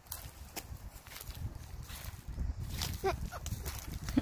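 Irregular crackling and snapping of dry leaf litter, twigs and fern stems as a person steps about and picks ferns by hand, over a steady low rumble. A brief voice is heard about three seconds in.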